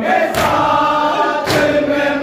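Men chanting a noha together in chorus, with a sharp slap of hands striking chests in matam twice, about a second apart, in time with the chant.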